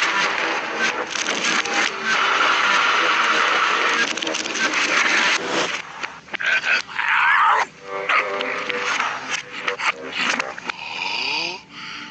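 Cartoon soundtrack played in reverse: a dense, noisy jumble of backwards sound effects for the first five seconds or so, then choppier, broken noises with sliding pitches and animal-like vocal sounds.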